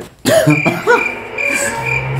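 A man laughing in short bursts, with music playing behind him.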